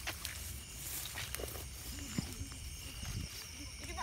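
Night insects chirring steadily in the background, over low rustling and handling noise as someone moves through tall grass, with a few faint clicks.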